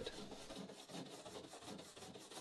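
Stainless steel wire brush scrubbing lightly over the varnished wood inside a canoe, a faint, quick rasping of repeated strokes. It is lifting loose varnish out of fine cracks in the wood grain.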